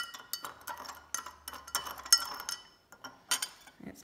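Metal teaspoon stirring dirt into water in a drinking glass, clinking irregularly against the glass, which rings briefly after the strikes. The strikes pause for a moment before one last clink near the end.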